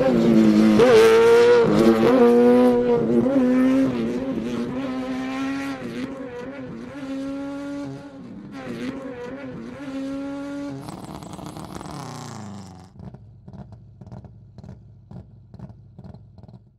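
Traxxas Slash 2WD electric RC truck's motor whining, its pitch rising and falling with the throttle for about ten seconds, then winding down. A run of short, quieter clicks follows near the end.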